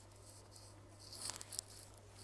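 Brief faint rustling and scraping about a second in, as a smartwatch with a rubber strap is handled and set down on the bench by gloved hands, over a low steady hum.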